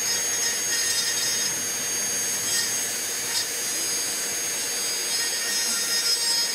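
High-speed rotary carving tool with a diamond burr running steadily: a high whine with a grinding hiss as the burr smooths down carved scales on a wooden .22 rifle stock.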